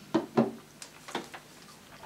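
A few light knocks and clicks, about five in the first second and a half, as small objects are handled and set down.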